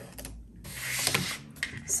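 Paper-crafting handling noise: a pen and paper rubbing and scratching on a tabletop, loudest in a short rub about halfway through, with a few light clicks before it.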